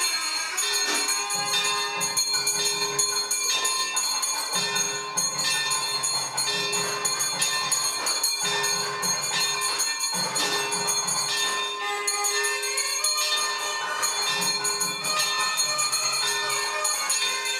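Temple bells ringing rapidly and continuously, with jingling percussion underneath, as during a puja.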